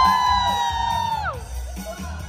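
A long high-pitched whoop from one voice. It rises, holds for about a second and then falls away, over a karaoke backing track with a steady beat.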